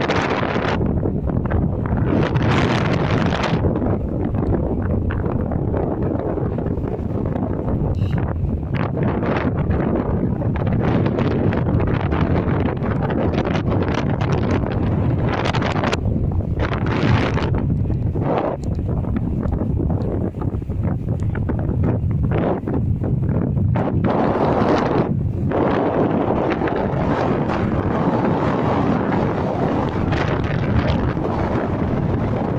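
Strong wind buffeting the phone's microphone: a loud, continuous low rumble, with harder gusts flaring up every few seconds.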